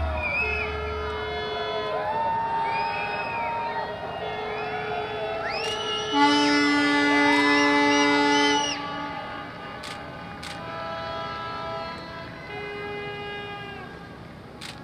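Many boat horns sounding together in salute, overlapping held blasts at different pitches that bend up as each starts and sag as it stops. The loudest is a long, low blast from about six seconds in to about eight and a half.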